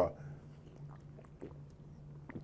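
Faint swallowing and mouth sounds of a man drinking water from a plastic bottle, with a few small clicks over a low steady room hum.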